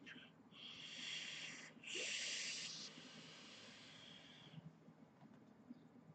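Airy hiss of a long drag pulled through a dripping atomizer's airflow as its dual-coil build, reading 0.14 ohms, fires on a cloned Avid Lyfe Able mod. A short pull comes first, then a brief break, then a longer, louder drag that fades out about four and a half seconds in.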